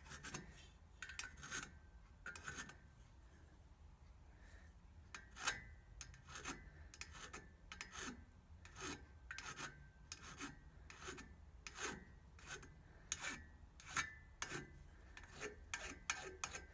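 Small hand file scraping in short strokes along the end of an aluminium 2CV pushrod tube, faint and fairly regular at about two strokes a second after a slower start. It is taking off a lip of alloy raised where the tube scuffed the crankcase as it was pressed in.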